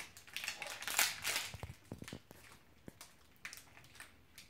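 Cereal bar's wrapper crinkling and crackling as it is pulled open, loudest in the first second and a half, then a few faint crackles.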